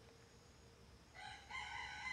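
A faint rooster crow: one long call starting a little past a second in, its pitch stepping up partway through.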